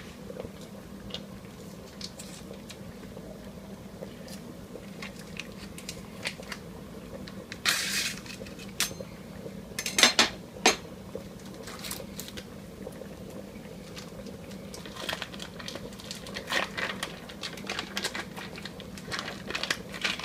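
Handling noise: a foil cream-cheese wrapper crinkling as it is worked and scraped, with a few sharp clinks and knocks of cookware, the loudest about eight and ten seconds in. Under it run a steady low hum and a pot of pasta water boiling.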